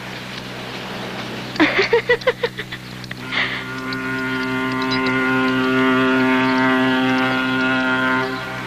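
A ship's horn sounding one long, steady blast that swells in about three and a half seconds in and stops right at the end.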